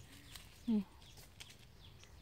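A single short vocal sound from a woman, one syllable falling in pitch, just under a second in; otherwise only a quiet background.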